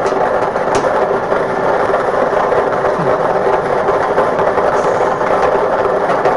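Lottery ball draw machine running: numbered balls clattering continuously as they tumble in its mixing chamber, over a steady hum.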